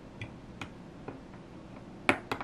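Three or four faint, light clicks of hard plastic, spaced irregularly, as a small plastic toy figure is handled and set onto a plastic toy piano bench.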